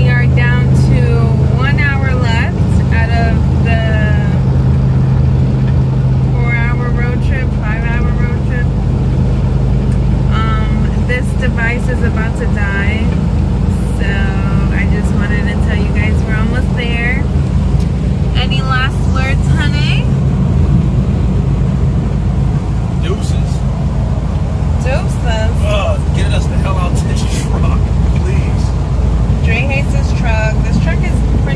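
Engine and road noise inside the cab of a moving box truck: a steady low drone, with a person's voice over it at times.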